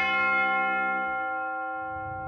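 A large tower bell struck once, then ringing on with a slowly fading hum of overtones.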